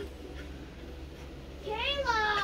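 A low steady hum, then near the end a girl's voice breaks in with a high, drawn-out whine, acting out a child begging for something.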